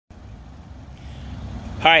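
Low rumble of outdoor background noise, slowly growing louder, then a voice says "Hi" near the end.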